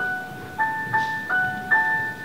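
A bell-toned instrument playing a slow melody in octaves, about five notes, each ringing on after it is struck.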